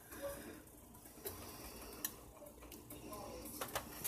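A few faint, scattered clicks of a metal fork against a glass baking dish as it pulls apart oven-baked ribeye steak.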